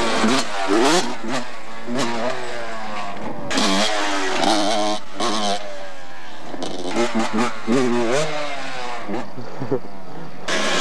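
Dirt bike engine revving as the bike accelerates, its pitch climbing and dropping back again and again as the rider goes up through the gears.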